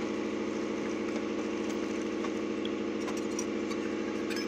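A steady mechanical hum from a small motor running, with a few faint clicks near the end.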